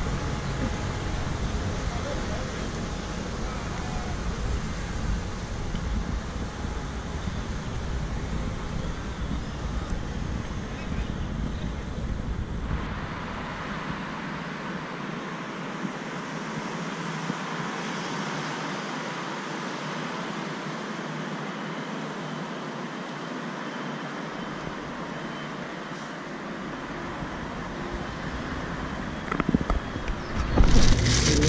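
Outdoor riverside ambience with wind rumbling on the microphone. About thirteen seconds in, it cuts to a steadier, thinner hiss of distant traffic without the rumble.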